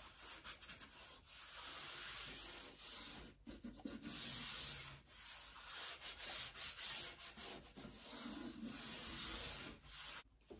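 Hands rubbing blue painter's tape down along the back of a stretched canvas frame: a run of dry rubbing strokes, each about a second long, with short pauses between.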